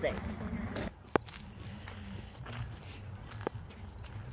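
Footsteps of someone walking along an outdoor path, under a low steady rumble, with two sharp clicks, one about a second in and another a little over two seconds later.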